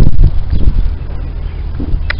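Wind buffeting the microphone: a loud low rumble that eases off about a second in.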